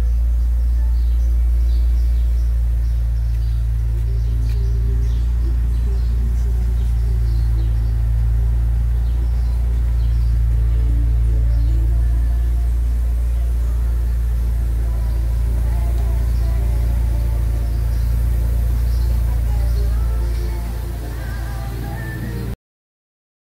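Music playing from the car's stereo, faint over a loud, steady low rumble that eases off near the end.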